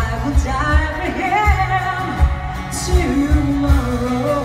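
Live folk-rock band music: a female voice singing a slow, wavering melody over plucked mandola and a steady low beat, heard through the venue's PA.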